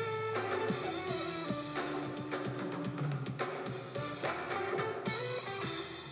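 Live band music: an instrumental passage with guitar chords to the fore, fading a little near the end.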